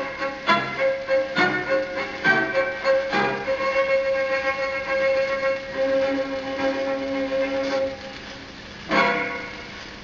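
Orchestral instrumental break of a children's TV theme song played from a vinyl 45: a few accented notes about a second apart, then long held melody notes led by strings and woodwinds, dropping quieter near the end.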